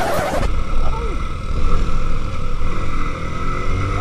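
Motorcycle engine running steadily with wind and road noise while riding, heard from the bike. A song cuts off at the very start.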